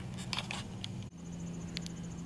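Crickets chirping in an even, pulsed high trill over a low steady hum, with a few faint clicks before the trill comes in about halfway through.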